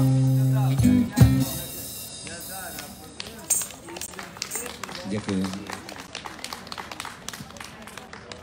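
Street band of acoustic guitar, cajon and vocals sounding a held final chord with a few last drum hits, which stops about a second and a half in. After that, faint voices and scattered light clicks.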